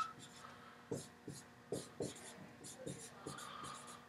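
Dry-erase marker writing on a whiteboard: a quick run of short, faint scratching strokes as a word is written out letter by letter.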